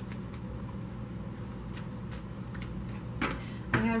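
A tarot deck being shuffled by hand: faint, irregular soft clicks of cards sliding over one another, over a steady low hum.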